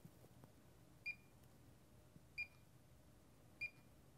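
Fluke 1587 FC insulation multimeter giving three short, high beeps about 1.3 s apart, one for each press of its range button, as the insulation test voltage is stepped up towards 1000 V.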